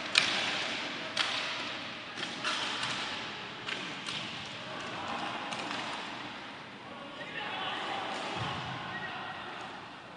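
Inline hockey play: sharp knocks of sticks on the plastic puck and the puck against the boards, the loudest right at the start and several more in the first four seconds, over voices calling out.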